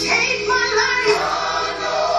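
Gospel music with a choir singing, accompanying a liturgical dance.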